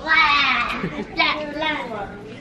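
A young girl's high-pitched laughing voice, in two stretches: the first about a second long, then a shorter one.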